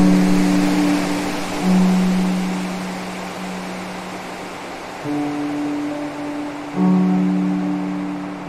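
Slow, soft piano music: low notes struck four times, about two seconds apart, each left to ring and fade, over a steady wash of water sound.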